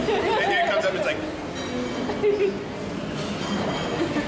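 Speech only: several people chattering at a table, voices overlapping.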